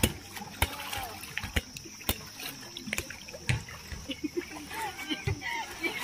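Water splashing and slapping in a swimming pool as a swimmer paddles in a rubber inner tube, in irregular sharp splashes. Voices are heard in the background.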